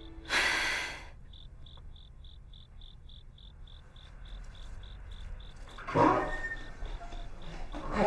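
A cricket chirping steadily at a high pitch, about two or three chirps a second. Near the start there is a short, loud breathy sob, and about six seconds in a brief noise.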